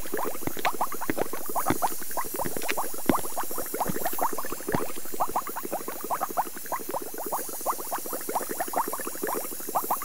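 Liquid bubbling in laboratory glassware: a dense, irregular stream of small pops, a little quieter in the second half.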